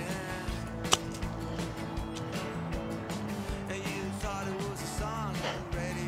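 A single sharp click of a golf club striking the ball on a short bump-and-run chip about a second in, over steady background music.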